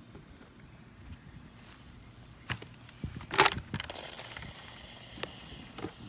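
Faint handling noise: a few scattered sharp clicks, with one louder brief clatter about three and a half seconds in.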